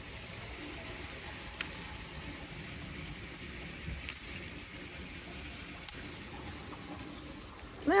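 Steady soft rush of running brook water, with three brief faint clicks spread through it.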